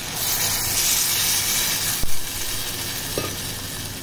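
Water poured from a steel bowl into a hot pressure cooker of fried masala and black chickpeas, hissing and sizzling as it hits the pan, loudest in the first two seconds. A single sharp knock about two seconds in.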